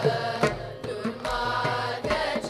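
A children's group singing a Carnatic song in unison, with a mridangam playing strokes about twice a second.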